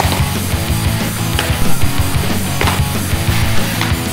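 Loud heavy rock music with distorted guitar and a driving drum beat.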